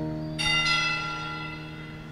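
A bell is struck twice in quick succession about half a second in, and its high ringing dies away slowly. Under it, the last notes of a keyboard chord fade out.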